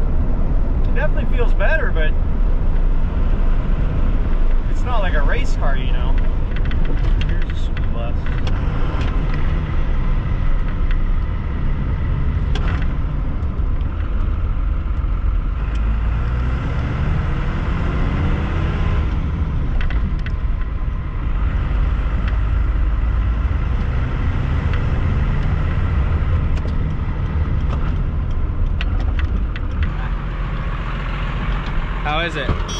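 5.9 12-valve Cummins turbo diesel of a second-generation Dodge Ram pickup, fitted with aftermarket governor springs, heard from inside the cab while driving. The engine runs with a steady drone, pulls up in pitch about halfway through and eases back down, then settles again.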